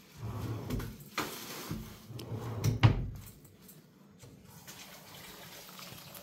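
Kitchen drawer being opened and shut, with a run of knocks and rattles over the first three seconds, the loudest knock near the middle; quieter after that.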